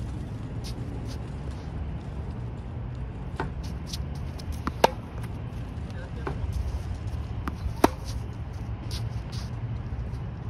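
Tennis racket striking the ball twice on forehands, about three seconds apart, each hit just after a fainter bounce of the ball on the hard court, over a steady low rumble.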